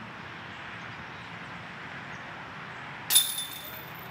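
A disc striking a metal disc golf basket about three seconds in: one sharp clank with a brief metallic ring. Steady outdoor background noise runs under it.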